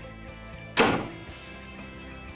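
A single loud slam about three-quarters of a second in, a skid steer loader's metal access door or panel being shut, fading out over about half a second, with background music playing underneath.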